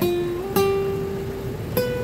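Nylon-string classical guitar picking out single notes of a Central Highlands (Tây Nguyên) scale. Three notes in a row, each higher than the last and left to ring.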